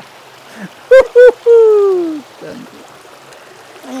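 A man's wordless voice close by: two short sounds about a second in, then a long drawn-out 'aah' falling in pitch. Under it runs the steady rush of a shallow forest creek over stones.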